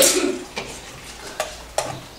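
Tableware being handled on a desk: a loud clatter with a short scrape at the start, then a few light clicks and taps of cutlery against toy dishes.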